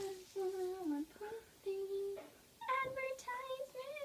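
A woman humming a short, simple tune of several held notes, the last ones higher and louder.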